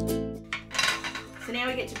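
Plucked-string background music fades out about half a second in. Then comes a light clatter of plastic craft tools being handled on a desk: an ink pad and an ink-blending tool being picked up and set down.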